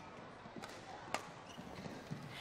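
Faint badminton rally: sharp racket strikes on a shuttlecock, three within the first second or so, over quiet sports-hall ambience.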